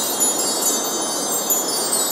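A shimmering chime sound effect for a logo reveal: a dense, steady wash of high tinkling tones over a rushing hiss.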